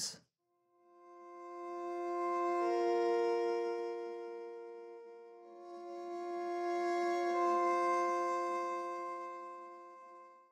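Sampled solo viola (Bunker Samples Iremia library) playing a soft, sustained chord of several notes. It swells in and fades out twice while an inner note changes, as the volume is ridden with the expression control.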